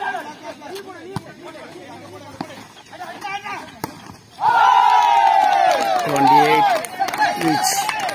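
Volleyball rally on an outdoor dirt court: the ball is struck a few times with sharp slaps, then about halfway through loud shouting and yelling from players and onlookers breaks out as the point is won, lasting about three seconds.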